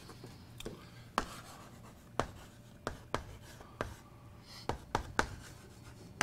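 Chalk writing on a blackboard: irregular sharp taps and short scratchy strokes as letters and symbols are written.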